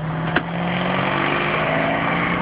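Supercharged Jeep Grand Cherokee SRT8 engine heard from inside the cabin, pulling with a slowly rising pitch. A single sharp click comes about a third of a second in.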